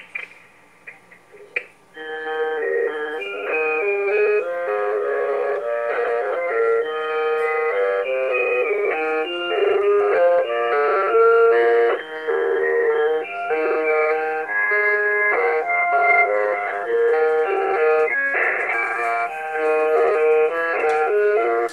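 Old organ music played back through a digital answering machine's speaker from a phone-line recording, so it sounds thin and narrow. A few faint clicks as the caller hangs up are followed, about two seconds in, by held organ chords that shift every second or so.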